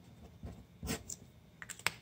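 Faint plastic clicks and taps at a desk as a marker pen and a calculator are handled: a tap a little before halfway, then a quick run of sharper clicks near the end.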